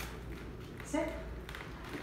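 A single short spoken word about a second in, over a low steady background hum with a few faint clicks.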